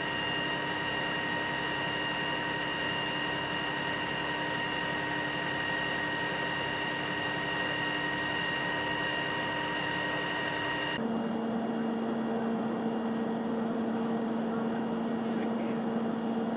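Fire engine's engine and water pump running steadily while the pump supplies hose lines: an even mechanical drone with a high whine. About 11 s in it changes abruptly to a lower, steady hum.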